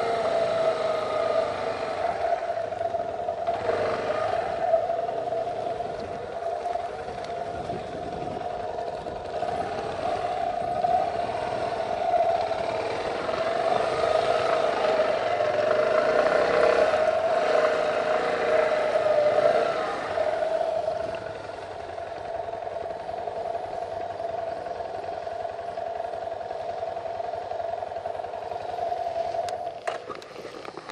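A vehicle engine running at a steady pitch. It grows louder through the middle and drops back about two-thirds of the way through.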